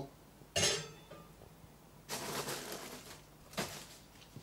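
Things being handled on a kitchen worktop: a sharp knock about half a second in, about a second of plastic-bag rustling, then another knock near the end as a plastic mixing bowl is moved.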